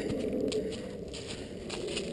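Footsteps on dry fallen leaves, with a few soft crunches and crackles.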